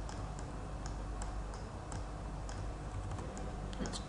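Faint, irregularly spaced clicks from a computer mouse and keyboard, about a dozen of them, over a low steady hum.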